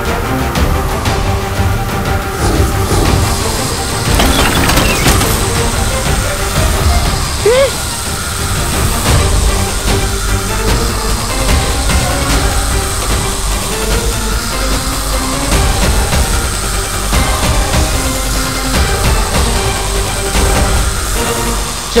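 Dramatic background score running steadily under magic energy-blast sound effects, with a short gliding whistle about seven and a half seconds in.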